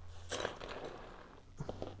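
Faint rustling of hands on a sheet of paper, with light clicks of small plastic Lego pieces being slid across it, in two short spells about half a second in and near the end.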